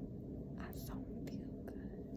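A girl whispering softly over a steady low room hum.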